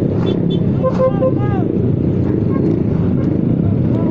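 Motorcycles and scooters running at low speed in a group, giving a steady engine and road rumble. Short voices and calls rise over it in the first second or so.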